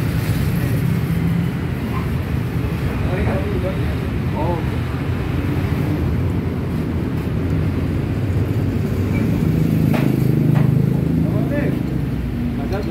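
Dongfeng S1115 single-cylinder diesel engine running steadily, a little louder about ten seconds in, with voices in the background.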